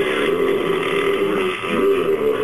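A man's loud, drawn-out throaty vocal sound, low and rough, wavering in pitch and dipping briefly near the end.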